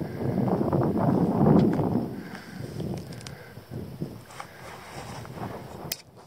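Wind buffeting the camcorder's microphone as a low rumble, loudest in the first two seconds, then easing to a lighter rustle with a few small clicks.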